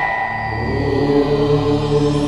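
A bell-like chime rings on and fades, and a chanted devotional mantra with long held notes enters about half a second in: the music that opens the next zodiac sign's segment.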